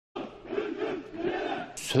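A group of soldiers chanting or shouting in unison as they run in formation, many voices together.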